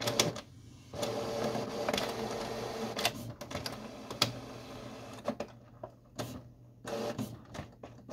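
Canon Pixma TR8520 inkjet printer's internal mechanism running while the printer is processing. A steady motor whir starts about a second in, with several sharp clicks. It dies down after about five seconds to a few scattered clicks.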